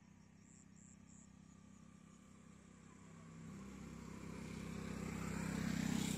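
Engine hum of a motor vehicle, low and steady, growing louder from about halfway through and loudest at the very end as it comes close.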